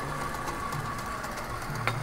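Stand mixer motor running steadily with its dough hook turning stiff pasta dough of flour and eggs in a steel bowl, a constant hum. One short click near the end.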